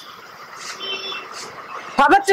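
A pause in speech filled by room and street background noise, with a brief faint high-pitched beep about a second in.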